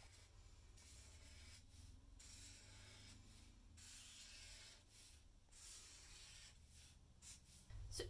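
Faint scratchy strokes of a felt-tip permanent marker drawing curved lines on paper. The strokes come in runs of about a second, with short pauses between them.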